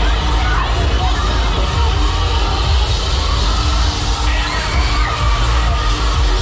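Riders on a spinning Break Dance fairground ride shouting and screaming over the ride's loud music, which has a heavy, constant bass. The loudest screams come a little after four seconds in.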